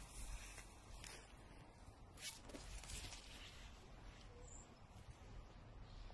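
Quiet outdoor ambience: a low steady rumble with a few brief, soft noises, the clearest just over two seconds in.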